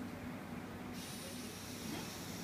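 Room tone: a steady low hum with a faint hiss and no distinct event.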